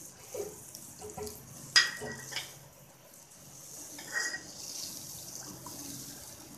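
A wooden spatula stirs roasted semolina and freshly added water in a wok: liquid sloshing over a faint steady hiss. The spatula knocks sharply against the pan a little under two seconds in, with a few lighter clatters around it.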